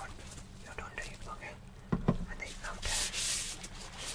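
Soft whispering and close-microphone handling sounds from gloved hands, with a sharp click about halfway through and a brief rustling hiss shortly after.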